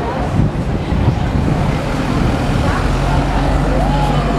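City street traffic: cars driving past on the road, a steady low rumble.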